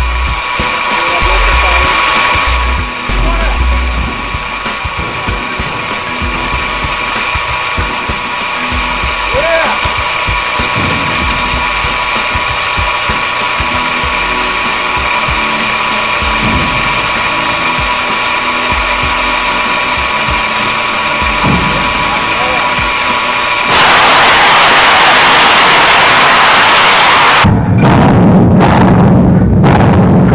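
Steady high-pitched whine of several pitches held constant while the missile canister's erecting machinery raises it from the rail car. Near the end a loud rushing hiss replaces the whine, then cuts off suddenly.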